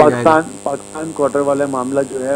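A man speaking, with a steady electrical hum under the voice.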